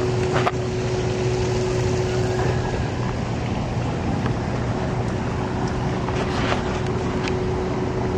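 Steady outdoor background noise: a low rumble and hiss like wind on the microphone, with a faint steady hum that drops out for a couple of seconds in the middle.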